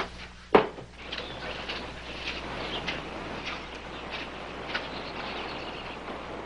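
A single sharp knock about half a second in, then a steady hiss with scattered short bird chirps.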